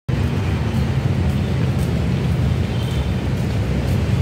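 Steady low rumble of outdoor city ambience, heaviest in the bass, with no pauses.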